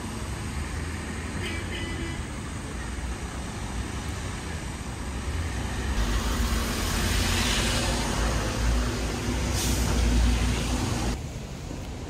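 Street traffic in the rain: a steady hiss of tyres on wet road with a low rumble, swelling through the second half as a vehicle passes and easing off near the end.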